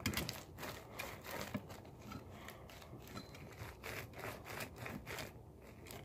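Slime being kneaded and squeezed by hand, giving a run of quick, irregular little clicks and crackles.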